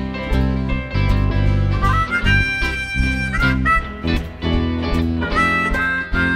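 Live blues-rock band playing an instrumental break: electric guitars, bass and drums in a steady shuffle, with a harmonica coming in about two seconds in with held, bending notes.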